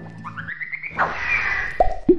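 Cartoon sound effects for an animated logo reveal. A quick run of rising, boing-like blips is followed by a whoosh about a second in and a sharp pop near the end.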